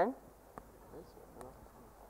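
Hall room tone in a lull, with two faint clicks and brief faint voices in the background.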